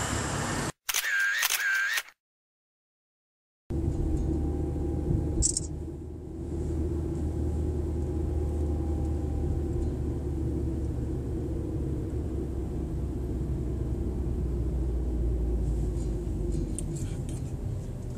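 Steady engine and road noise from inside a moving car, starting about four seconds in after a short break of silence.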